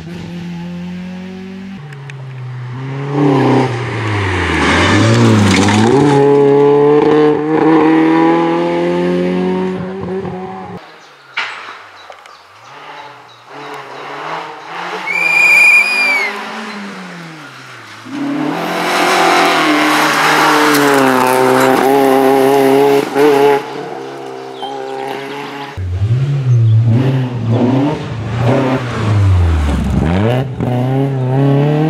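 Opel Kadett GSi rally car's engine revving hard, its pitch climbing and dropping through gear changes as the car drives flat out past the camera several times. A short high-pitched squeal, typical of tyres, comes about halfway through, in a quieter stretch between the loud passes.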